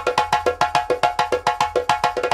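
Hand drums, led by a djembe, struck in a fast, even run of about eight strokes a second, each stroke ringing briefly with a pitched tone.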